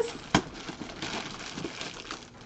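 Plastic packaging bag crinkling as it is handled and pulled open. There is one sharp snap about a third of a second in, then quieter rustling.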